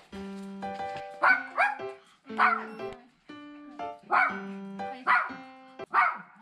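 A toy poodle barking: about five short, sharp barks a second or so apart, louder than the background music that runs underneath.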